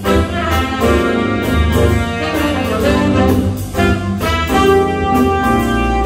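A big jazz band playing live: trumpets, trombones and saxophones sounding together over drums keeping a steady beat, heard from the audience in the hall.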